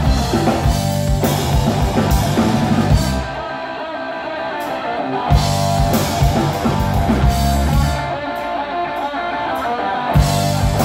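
Live blues-rock band: electric guitar played over drums and bass. Twice the drums and bass drop out for about two seconds, leaving the guitar playing alone before the band comes back in.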